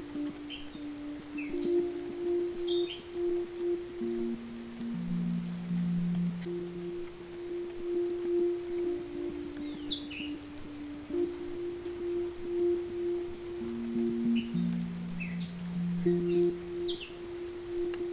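Slow, soft background music of long held low notes changing in pitch every few seconds, with birds chirping over it in a few short calls near the start, around the middle and near the end.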